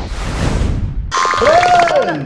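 Editing sound effects for a scene transition: a whoosh that sweeps down and fades, then, about a second in, a short comic pitched effect whose tone rises and falls over fast regular ticks.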